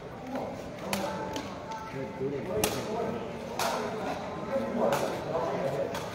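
Background chatter of spectators in a large covered hall, with four sharp knocks spread through it, the sepak takraw ball being struck or bounced between rallies.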